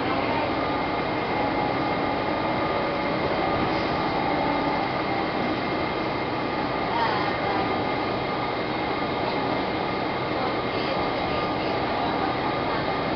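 Cabin noise inside a moving city transit bus: a steady rumble of engine and road with a faint, steady whine on top.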